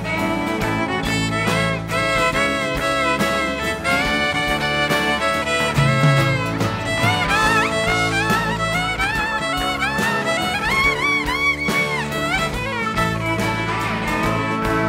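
Live rock band playing an instrumental break led by a fiddle solo. The fiddle slides and bends between notes over guitars, bass and drums keeping a steady beat.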